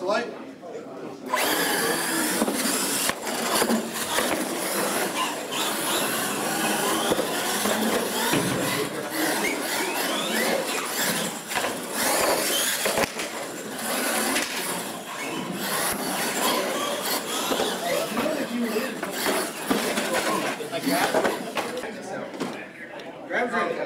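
Electric R/C monster trucks racing, starting abruptly about a second in: a motor whine that rises and falls with throttle, with repeated knocks and clatter from the trucks on the track and ramps.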